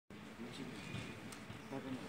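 Faint, indistinct voices.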